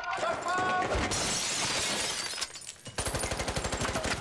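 A loud crash of noise about a second in, then rapid automatic gunfire from about three seconds in, heard from a TV drama's soundtrack.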